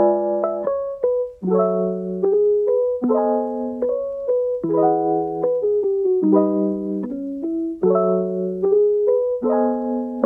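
Background piano music: a gentle tune with a new chord about every one and a half seconds and a simple melody above it.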